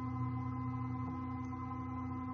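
iOptron CEM60 equatorial mount slewing in right ascension at 512x speed: a steady motor whine of several even tones, holding one pitch.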